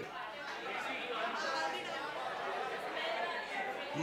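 Faint, indistinct chatter of several voices with no one voice standing out.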